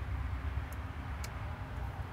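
Quiet handling of a rubber hose over an engine bay, with two faint clicks, over a low steady background rumble.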